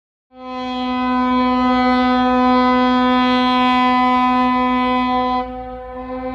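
A ship's horn sounding one long, steady blast lasting about five seconds, then dropping in level near the end.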